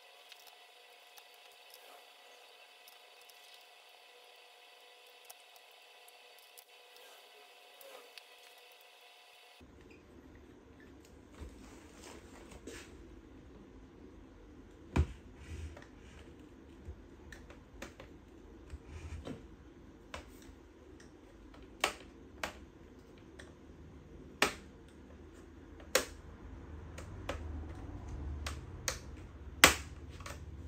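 Small screwdriver work on a laptop's metal bottom cover: after a near-silent stretch with a faint steady hum, several sharp clicks come every few seconds as the T5 screws are turned out and the tool and screws tap the case. The loudest click comes near the end.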